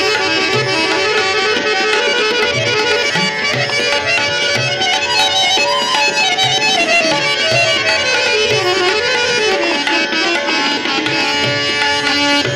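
Harmonium playing a melodic passage in raag Bhairavi, with a run that falls in pitch through the middle and climbs back up, over tabla strokes keeping time.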